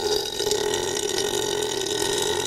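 A man's long, drawn-out burp, held as one unbroken sound.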